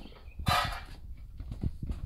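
Handling noise from a phone camera being moved: a few dull thumps and a short rustling hiss about half a second in.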